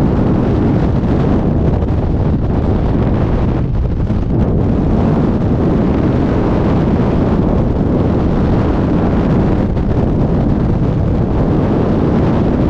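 Freefall wind rushing over the camera microphone: a loud, steady roar of air.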